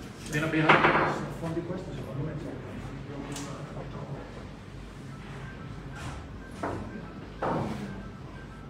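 Billiard shot: a few sharp knocks of cue and balls in the second half, the loudest just before the end, with a man's voice in the first second.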